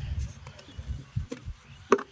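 Wooden brick moulds knocking on the ground as wet clay bricks are turned out by hand: a few sharp knocks, the loudest near the end.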